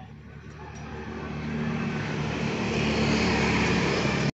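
A motor vehicle's engine and road noise growing steadily louder as it approaches.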